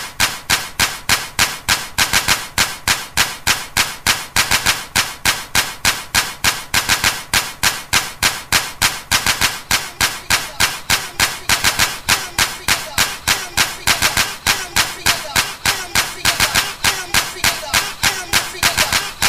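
Early hardcore (gabber) track opening on a fast, even run of sharp percussive hits, about four a second, without the heavy bass kick. A low wavering synth tone joins in for the last third.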